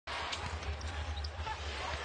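Arena crowd murmur during live basketball play, with a basketball being bounced on the hardwood court and a couple of short high sneaker squeaks near the middle.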